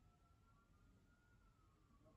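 Very faint wail of distant emergency-vehicle sirens, their pitch slowly rising and falling, with otherwise near silence.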